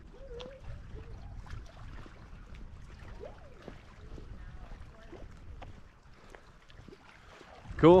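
Outdoor walking ambience: a low, steady rumble with scattered faint ticks and brief snatches of distant voices. A man's voice says "cool" right at the end.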